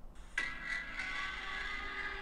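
A song demo playing back through a phone's small speaker, starting suddenly about a third of a second in as several steady held tones.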